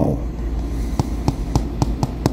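A fingernail tapping lightly on mirror glass, four short clicks in the second half, over a steady low hum. This is the fingernail test for a two-way mirror.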